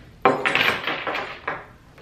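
A metal horse bit and bridle hardware clattering on a wooden tabletop: a sharp knock about a quarter second in, then several smaller clinks and rattles over the next second as it is set down.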